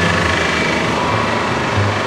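Steady street traffic noise with a low engine hum, no distinct events.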